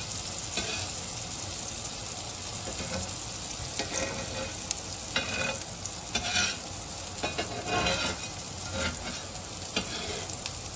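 Patties shallow-frying in oil on a cast iron griddle, sizzling steadily. A metal spatula scrapes and knocks against the pan several times in the second half as the patties are turned.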